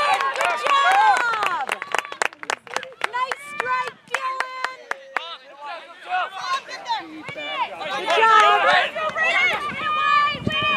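Spectators' voices at the soccer field: overlapping talk and calls, with one held call near the middle. A run of sharp clicks comes through in the first few seconds.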